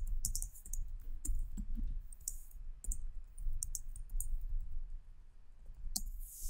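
Computer keyboard typing: a run of quick, irregular keystroke clicks as a page name is typed, over a low background rumble.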